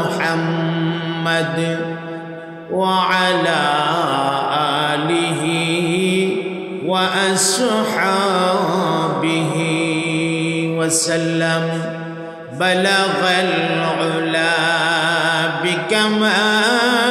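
A man chanting long, drawn-out melismatic phrases with a wavering vibrato and no clear words, amplified through a PA. A fresh phrase swells in about 3, 7 and 12½ seconds in.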